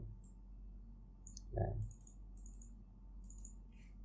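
Several faint computer mouse and keyboard clicks, spread out over a few seconds as values are entered into a software field.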